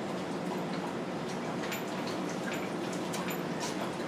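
Steady room tone, an even hiss with a faint low hum, broken by a few faint clicks.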